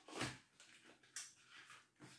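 Faint handling noises of a small cardboard supplement box: a short rustle just after the start, then a couple of light taps.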